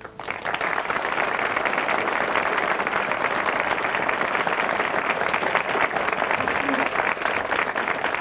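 Studio audience applauding steadily at the end of a song, the clapping breaking out the moment the music stops.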